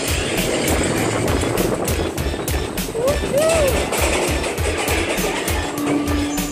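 Seven Dwarfs Mine Train roller coaster car rolling along its track with a rapid, even clatter of wheels over the rails. A steady hum comes in near the end as the train reaches the lift hill.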